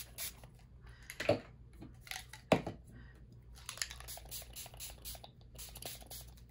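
Finger-pump spray bottle of Distress Oxide ink spritzing onto paper: a series of short, separate hisses, the loudest about two and a half seconds in.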